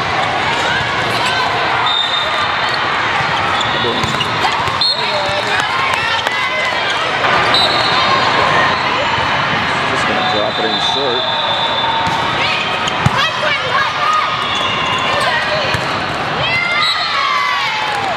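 Volleyball play in a large echoing hall: balls being struck and bouncing, sneakers squeaking on the court surface in short high chirps, and a steady din of players' and spectators' voices. A cluster of squeaks comes near the end.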